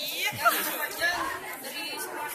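Speech only: several voices talking, indistinct chatter.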